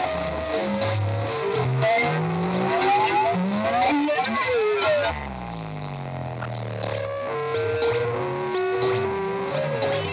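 Live electronic noise music: a high falling zap repeats about three times every two seconds over sliding, warbling synth tones. About four to five seconds in, the pitches bend and tangle into a descending sweep, and a lower drone then glides beneath.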